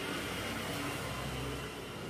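Chalk scratching across a blackboard as a word is written out by hand, a steady rough hiss.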